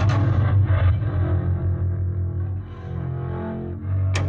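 Cello and harmonium music: a low, hard-bowed cello note held over sustained harmonium tones, after a few quick rough strokes right at the start.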